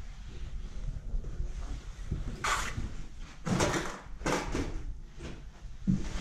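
Footsteps on bare wooden floorboards: a few irregular scuffs and creaks, the last with a low thud near the end, over a steady low rumble from the moving camera.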